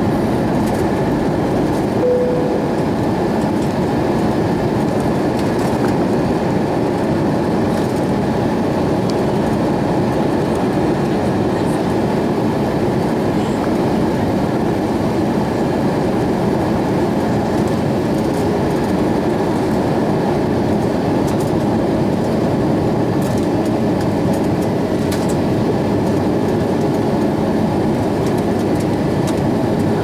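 Steady cabin noise of an Airbus A320-232 in flight, heard from a window seat over the wing: the drone of its IAE V2500 turbofans mixed with the rush of air past the fuselage, on descent. A brief faint tone sounds about two seconds in.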